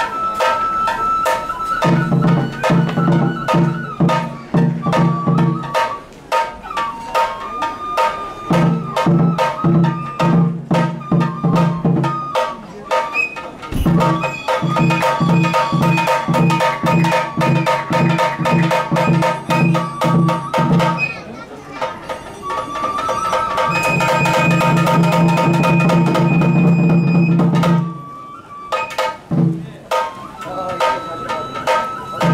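Japanese shrine kagura accompaniment: a high bamboo flute holding long melodic notes over quick, sharp drum strokes, with four stretches of rapid low drumming that come and go.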